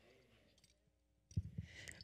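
Near silence, then about a second and a half in a few soft low thumps and clicks of a handheld microphone being picked up and handled.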